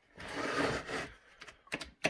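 A dirty chainsaw powerhead being grabbed and shifted on a wooden workbench: a scraping rustle for about a second, then a few sharp clicks and knocks near the end.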